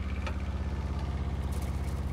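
Diesel engine of a trailer-mounted mastic melter/applicator running at a steady idle: a low hum with an even, fast pulse.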